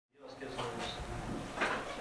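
Faint, indistinct voices in a room, with a few brief knocks or clatters.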